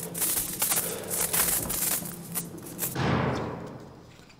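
The intro music and sound design of a web series, played back: a dense, crackling stream of clicks and thuds, then a swell about three seconds in that fades away.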